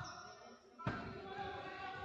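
A basketball bounced on a hardwood court by a shooter at the free-throw line: one sharp bounce a little under a second in, his routine before the free throw.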